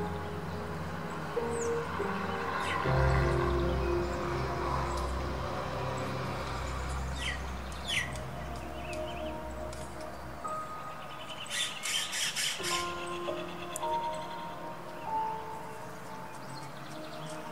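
Background music with bird calls over it: a few sharp falling notes, then, about twelve seconds in, a quick stuttering run of notes, from red-rumped caciques at their colony nests.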